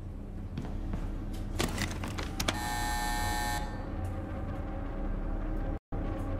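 Reactor control-room hum with a few sharp switch clicks, then an electric alarm buzzer sounding for about a second as the AZ-5 emergency shutdown (scram) is engaged.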